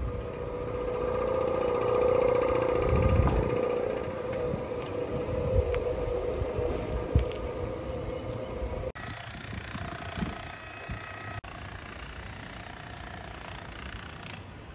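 A running engine's steady hum, growing louder over the first few seconds as it is passed close by and then fading. About nine seconds in, the sound cuts abruptly to a quieter outdoor background.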